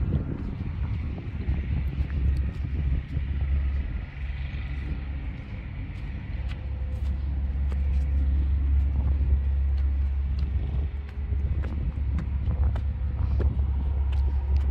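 Wind buffeting the phone's microphone outdoors: a steady low rumble, with light ticks scattered through it.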